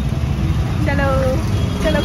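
A person's voice, in short vocal sounds about a second in and again near the end, over a steady low rumble.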